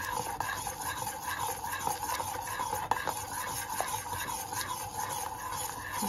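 Steel spoon stirring thickening milk custard around a stainless steel saucepan on the heat, scraping the pan in a steady rhythm of strokes. The custard is kept moving continuously so it thickens without sticking.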